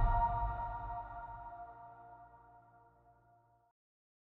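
The ringing-out tail of an electronic logo jingle: a held chord of several steady tones over a low bass, fading away and gone about three and a half seconds in.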